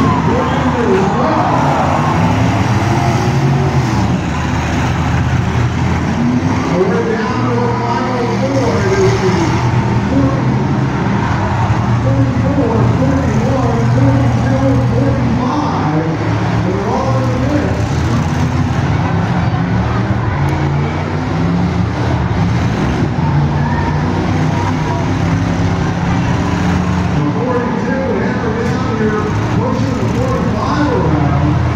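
Several demolition derby cars' engines running and revving together, mixed with loud crowd chatter close by.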